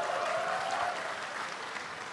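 Audience applauding in a hall, easing off slightly toward the end.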